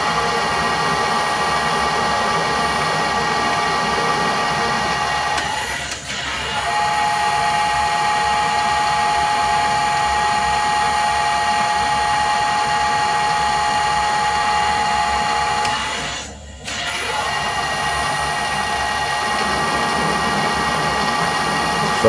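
Metal lathe running under power while screw-cutting an M40x1.5 thread, with a steady multi-tone gear whine. The sound drops out briefly twice, about six and sixteen seconds in, then runs on.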